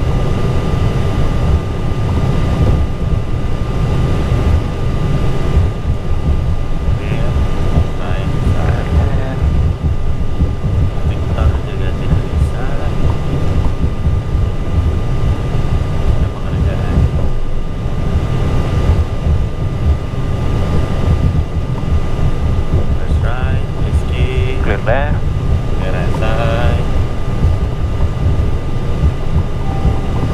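Airbus A320 cockpit noise while taxiing: a steady low rumble with a constant thin whine over it, from the engines at taxi power and the cockpit systems.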